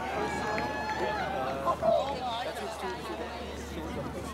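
Indistinct chatter of several people talking, with outdoor background noise.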